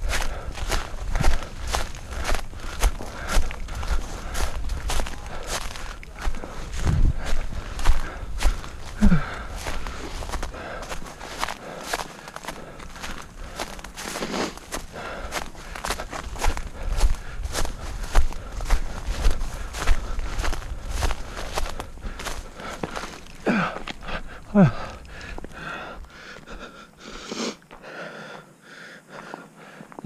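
Footsteps along a narrow dirt path between tea bushes: a steady series of footfalls, a few each second, with a low rumble under them in the first third. The steps grow quieter in the last few seconds.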